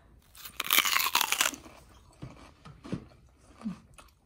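A person biting into Golden Grahams cereal pressed around a pickle: a loud crunch lasting about a second, starting about half a second in, followed by a few fainter chewing crunches.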